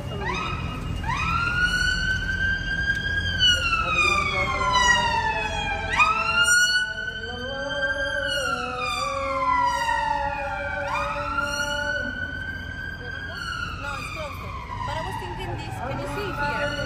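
Emergency vehicle siren wailing in three long sweeps, each rising quickly and then falling slowly over several seconds before jumping back up.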